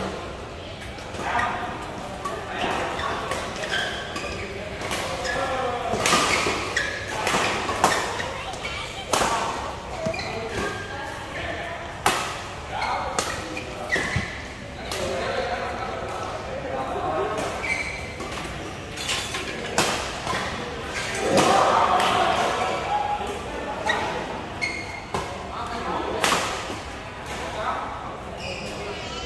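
Badminton rackets striking the shuttlecock during rallies: sharp cracks, irregular and about a second or two apart, ringing in a large hall, with players' voices calling between shots.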